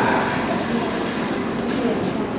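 A woman talking over a loud, steady background din.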